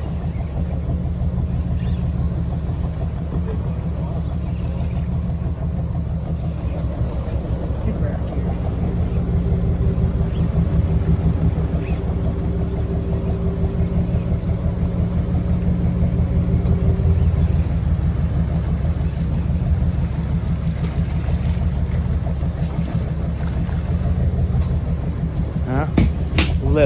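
Boat engine running steadily with a low, even drone while the boat moves slowly during the fishing; a thin higher whine joins it for several seconds around the middle.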